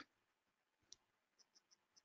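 Near silence with a few faint, short clicks: one about a second in, then several in quick succession near the end.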